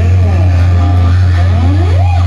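Thrash metal band playing live through a club PA, loud and distorted: a held low bass drone under notes that slide up and down in pitch.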